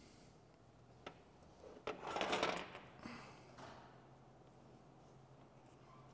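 Hand handling of coilover shock parts as the base is positioned on the shock body: a click about a second in, a short scrape about two seconds in, then a few soft clicks over a faint steady hum.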